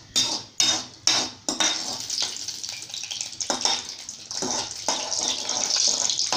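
Cashew nuts frying in hot oil in a metal kadai, a steady sizzle, with a spoon scraping and clinking against the pan about four times in the first second and a half and again now and then.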